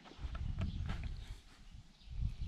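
Footsteps on dry garden soil: a run of soft low thuds and light scuffs during the first second and a half, quieter near the end.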